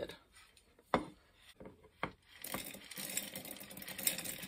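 Dry navy beans poured from a plate into a half-gallon glass canning jar: two sharp clicks about a second apart, then from about two and a half seconds in a continuous rattle of beans streaming into the jar.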